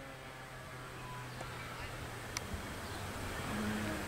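Faint, steady low mechanical hum that fades after about two and a half seconds, with one light click. A slightly higher hum starts near the end.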